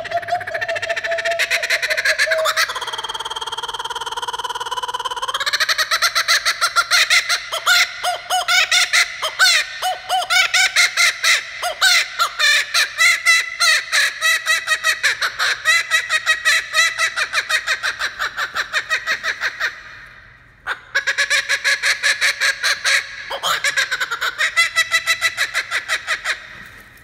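Laughing kookaburra giving its laughing call. It opens with a rising note and a held tone, then breaks into a long run of rapid chuckling notes. After a brief pause about twenty seconds in, the rapid notes start again.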